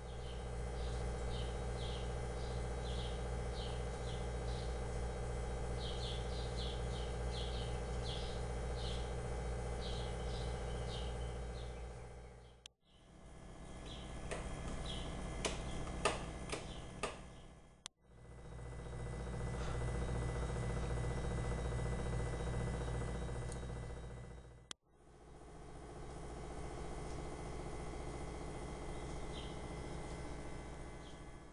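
Birds chirping in short, repeated calls over a steady low hum, the chirping busiest in the first dozen seconds. The sound drops out briefly three times, and a few sharp clicks come near the middle.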